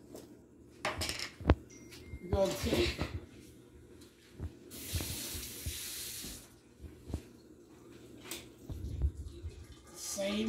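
Kitchen tap running for about two seconds midway, with clinks and knocks of a jar and utensils on a counter before and after it, and a dull thump near the end.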